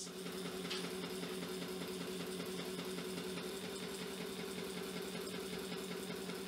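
A DIY persistence-of-vision LED fan display spinning at speed: its motor and rotating blades give a steady hum with a fast, even whirr.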